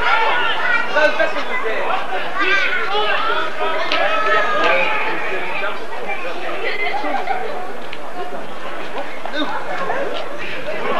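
Indistinct chatter of several voices talking and calling over one another, with no clear words.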